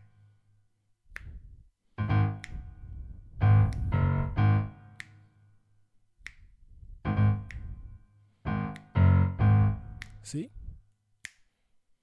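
Left-hand bass octaves on a keyboard playing a looping syncopated rhythm, alternating A-flat and G-flat in short groups of two and three notes. Sharp clicks fall in the gaps between the groups.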